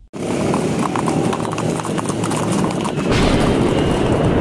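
Hooves of several horses clip-clopping on a paved road, a busy irregular clatter that starts abruptly and grows louder about three seconds in.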